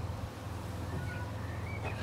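Outdoor background ambience: a steady low hum with a couple of brief, faint bird chirps, one about a second in and another near the end.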